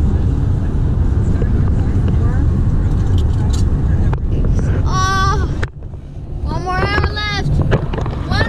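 Steady road and engine noise inside a BMW's cabin at highway speed, a deep rumble. Short bursts of voices break in over it about five seconds in and again near the end.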